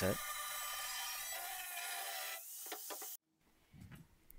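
Angle grinder with a cut-off disc cutting through a long steel plate: a steady high grinding whine that cuts off suddenly about three seconds in.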